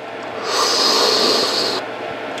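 A mouth-made slurping sip, standing in for a toy car drinking motor oil: one airy draw about a second and a half long.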